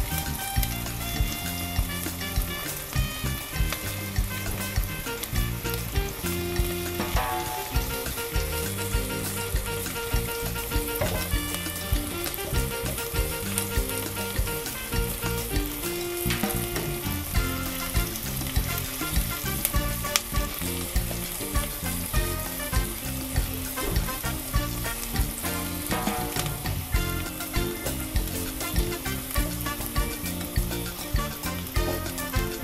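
Sliced shallots, garlic and lemongrass sizzling in hot oil as they are stirred with a spatula in the pot. Background music with a steady beat plays throughout.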